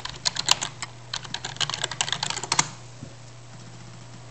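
Typing on an NEC laptop keyboard: a quick, uneven run of key taps that stops a little before three seconds in, over a steady low hum.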